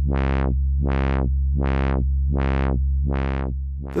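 Low, steady modular synthesizer drone whose filter cutoff, driven by an Ian Fritz ChaQuO chaos generator, sweeps open and shut in smooth, even waves about five times in four seconds. With the gain turned down, the chaos circuit runs away to its upper and lower limits, clipping like feedback that is too strong, so the cutoff swings regularly between the two extremes.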